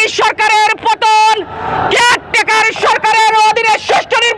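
A man shouting protest slogans in Bengali through a megaphone, in short loud phrases with brief breaks between them.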